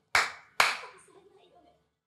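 Two sharp hand claps about half a second apart, near the start.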